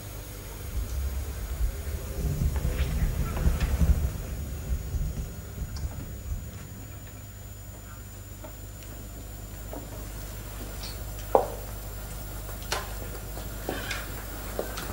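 Footsteps and handling noises on a studio stage floor: low thuds for the first few seconds, then a few sharp clicks and knocks, over a faint steady high-pitched tone.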